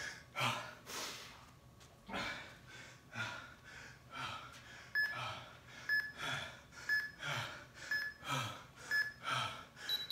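A man breathing hard in repeated deep breaths, winded after sprints and burpees. From about halfway, an interval timer beeps once a second, five times, then gives a longer, higher beep at the end as the countdown runs out.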